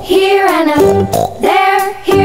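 Children's song with a child-like singing voice over an instrumental backing, playing as background music.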